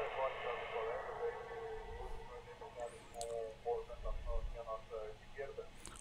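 Aviation radio traffic between a pilot and the control tower: faint, thin-sounding voices on a narrow-band radio channel.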